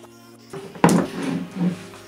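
A single sharp knock about a second in, as a geometric glass terrarium is set down on a table, followed by lighter handling sounds, over faint background music.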